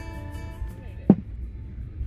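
Music fades out over the steady low rumble of an airliner cabin, and one short sharp sound, the loudest thing here, comes about a second in.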